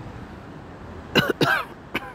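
A person coughing: two quick coughs about a second in, with a short third sound just before the end.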